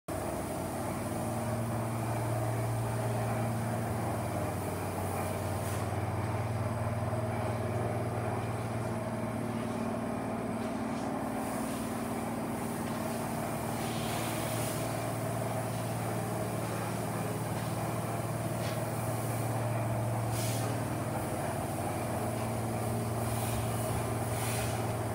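Yamaha FZR250's inline-four engine running steadily with no revving, its exhaust note holding one even pitch.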